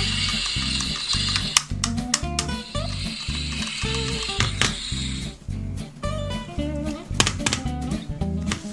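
Kongsuni toy frying pan's electronic sizzling sound effect, a hiss that plays twice for about two seconds each, over background music with a steady beat.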